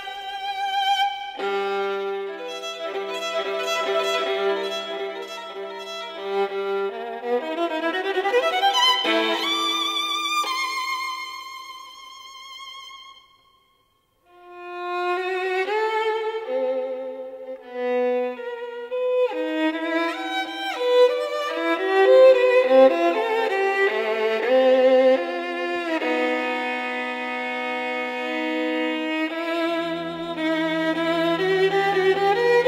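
A violin playing a slow, romantic melody with vibrato over lower held notes; the music fades out to a moment of silence about halfway through, then the violin comes back in.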